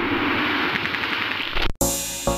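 Logo-intro sound effect: a dense, rapid rattle like gunfire that cuts off sharply near the end, followed at once by the start of a song.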